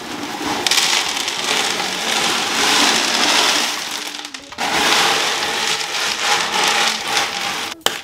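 Clay hydro balls (expanded clay pebbles) poured from a plastic zip-top bag into an acrylic enclosure, rattling and clattering against the acrylic floor and each other. The pour comes in two long runs with a brief break about four and a half seconds in.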